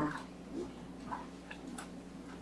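A few faint, sharp clicks about a second and a half in, from something small being handled in the hands, over a low steady room hum.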